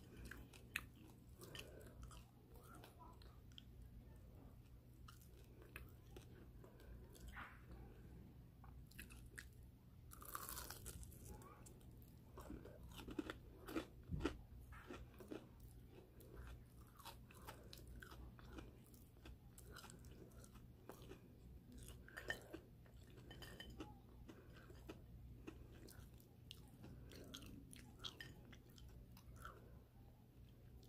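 Close-miked chewing of crunchy breaded shrimp: a quiet, continuous run of small crunches and wet mouth clicks, with a few louder crunches around the middle.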